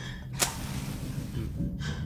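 A sharp click, then a long breathy gasp.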